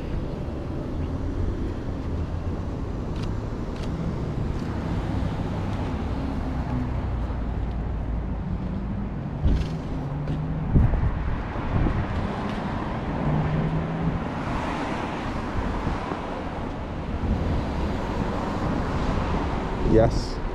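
Street traffic: cars driving past with a steady low engine and tyre rumble that swells as one passes in the second half. A couple of short sharp clicks about ten seconds in.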